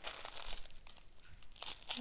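Small plastic bags of diamond-painting drills crinkling as they are handled, loudest at the start, fading in the middle and picking up again near the end.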